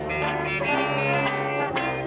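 Live traditional jazz band playing, with steady held notes between two sung lines.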